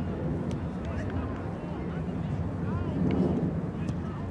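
Faint shouts and calls from soccer players and onlookers on an open field, scattered over a steady low rumble, with a few short sharp ticks.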